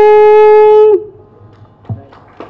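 A woman's voice holds one long, steady sung note through a microphone, with no accompaniment. The note stops about a second in, leaving a quiet hall with a soft thump near the end.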